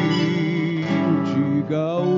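Live gaúcho folk music: an acoustic guitar strummed along with an accordion holding sustained chords, with no singing.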